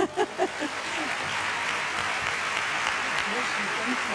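A large congregation applauding, building up within the first second and then holding steady. A woman laughs briefly at the start.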